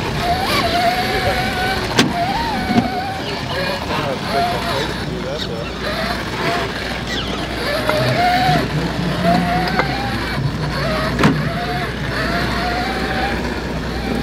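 Axial SCX6 1/6-scale RC rock crawler's electric motor and drivetrain whining as it crawls over rocks, the pitch rising and falling with the throttle, with a few sharp knocks from the chassis and tyres on the rocks.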